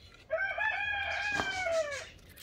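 A rooster crowing: one long crow starting about a third of a second in, rising slightly and falling away at the end.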